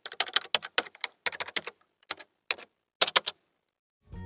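Keyboard typing: rapid runs of key clicks with short pauses, stopping about three and a third seconds in.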